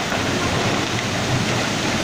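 Landslide of rain-soaked earth and debris sliding down a hillside: a steady, dense rushing rumble, heard together with heavy rain.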